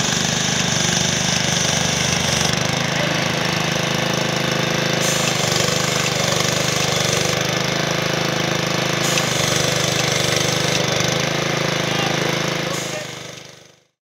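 Small petrol engine of a road line-marking paint machine running steadily at constant speed, fading out near the end.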